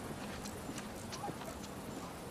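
Quiet outdoor countryside ambience on a film soundtrack: a steady soft hiss with scattered light clicks and taps.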